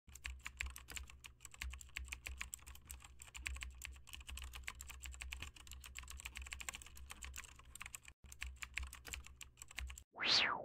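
Rapid, irregular clicking over a low steady hum, with a brief break about eight seconds in.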